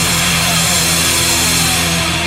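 Brutal death metal music: a loud, steady, heavily distorted drone held with the drums dropped out.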